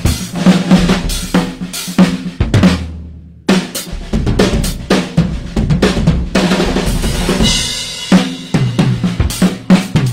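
Two drum kits, one a Sawtooth Command Series, played together in a busy rock pattern of bass drum, snare and tom hits with cymbals. The playing drops out briefly about three seconds in, then comes back, and a cymbal rings out around seven and a half seconds.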